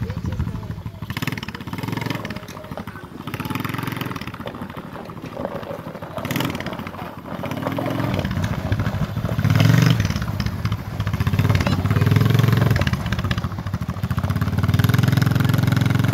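Small youth quad bike's engine running as it rides along, its revs rising and falling, louder from about halfway through.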